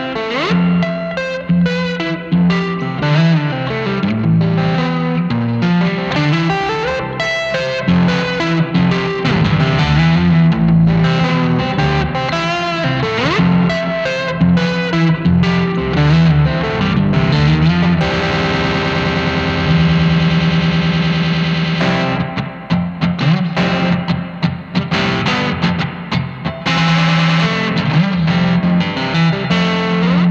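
Ibanez YY10 electric guitar played through a Vox AC10 amp and a chain of effects pedals: a busy riff of quick notes, thickening into a dense held wash of sound a little past the middle, then breaking into choppier, stuttering notes before the riff returns.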